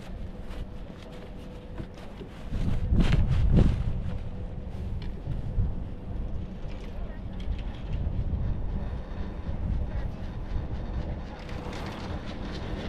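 Riding a Doppelmayr detachable quad chairlift: wind on the microphone and a low rumble, with a faint steady hum. A louder gust comes about three seconds in.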